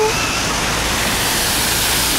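Steady rushing and splashing of water from a plaza floor fountain, its many ground jets spraying up and falling back onto the paving.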